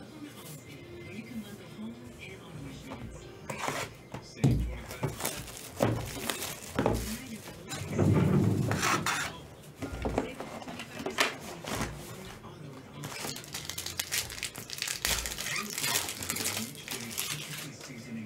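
Hands opening a sealed hobby box of trading cards: plastic wrap crinkling and tearing, then cardboard and foil packs rustling, in irregular crackles with a louder spell about halfway through.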